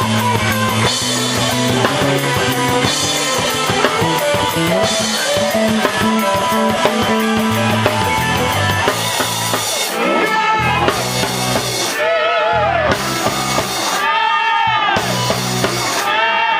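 Live rock band playing an instrumental passage on drum kit, bass and electric guitar. In the second half the cymbals drop out in gaps, and the electric guitar plays repeated bent, wavering notes.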